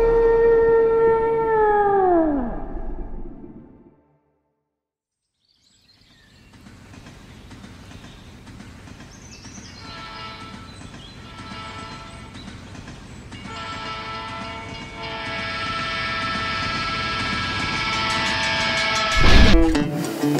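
Intro soundtrack effects. A pitched tone with overtones glides down and fades out in the first few seconds, followed by about two seconds of silence. Then a rushing rumble carrying a held chord of horn-like tones grows steadily louder for about thirteen seconds and ends in a sudden loud hit near the end.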